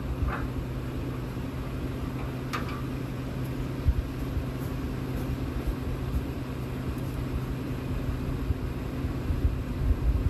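A vehicle engine idling with a steady low hum, and a light metallic clink about two and a half seconds in.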